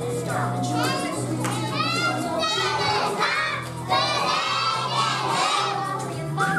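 Many young children's voices called out loudly together in unison, in several drawn-out phrases, with a steady low tone underneath.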